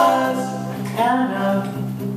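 Live acoustic folk-rock song: a steel-string acoustic guitar played under a woman's and a man's voices singing in two-part harmony. One sung phrase trails off and the next begins about a second in, the guitar carrying on beneath.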